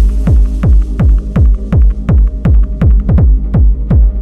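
Hard electronic dance music at 165 beats a minute: a kick drum on every beat, each one dropping in pitch, about three a second over a continuous deep bass. The treble is filtered away, leaving mostly kick and bass.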